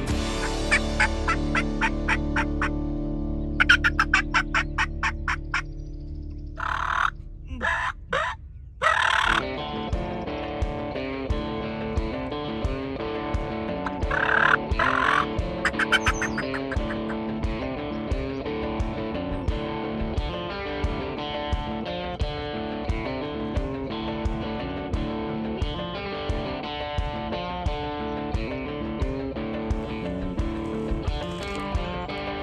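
Background guitar music with a steady beat, over which a wild turkey gobbles several times in the first half.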